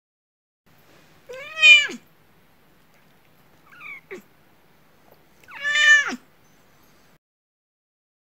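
A cat meowing twice: one long meow about a second in and another near six seconds, each rising and then falling in pitch, with a faint short chirp between them.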